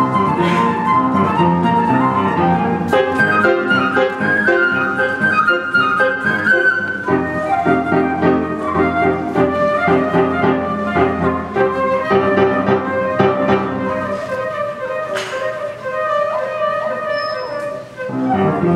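Concert flute playing a lyrical melody over piano accompaniment. Near the end it holds a long note with vibrato.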